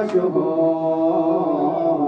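A group of voices chanting in unison on long held notes, with a brief sharp sound just after the start.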